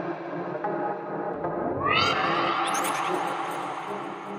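Techno DJ mix in a breakdown: sustained synth tones with no kick drum, and a rising synth sweep from about halfway through.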